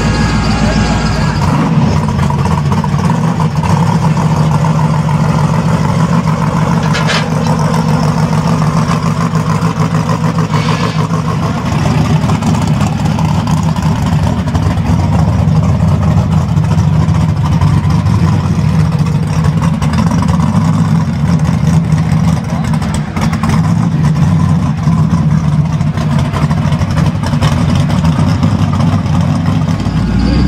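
Drag-race engines, a supercharged Ford Coyote 5.0 V8 and a built Monte Carlo SS engine, idling and creeping forward at low speed with a loud, steady, deep rumble.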